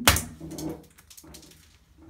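A single sharp plastic snap right at the start as a suction-cup hook pressed onto the wall breaks, followed by two short wordless vocal sounds from the person.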